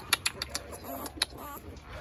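Small sounds from a week-old pit bull puppy being held: a few short clicks and knocks of handling, and one faint, brief squeak about one and a half seconds in.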